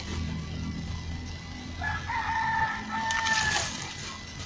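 A rooster crowing once: a single long call that starts about two seconds in and lasts nearly two seconds.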